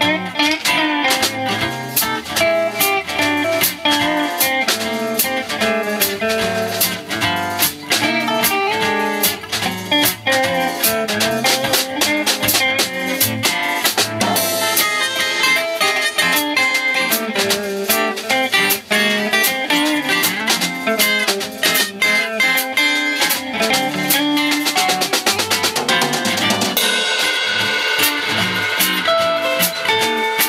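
Instrumental band jam without bass or vocals: a Pearl drum kit keeps a steady beat under a Stratocaster electric guitar and a Gibson J-45 acoustic guitar.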